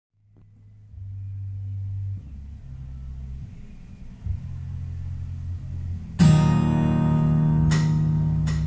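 Instrumental intro of a karaoke backing track: low bass notes for the first six seconds, then a loud chord struck about six seconds in that keeps ringing, with another stroke near the end.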